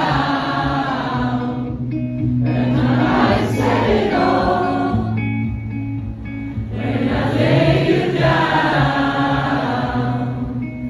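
Live rock ballad: long wordless sung phrases, three of them, over electric guitar and steady sustained bass notes.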